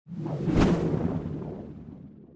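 Whoosh sound effect of an animated logo intro: a deep swoosh that swells to its peak about half a second in, then fades away slowly.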